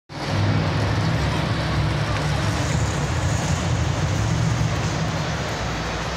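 Monster truck engines running steadily at idle, a deep even rumble, over a wash of stadium crowd noise.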